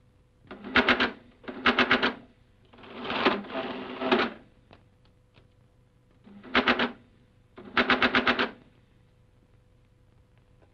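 Mechanical adding machine clattering in five bursts, about a second each, as figures are run through it.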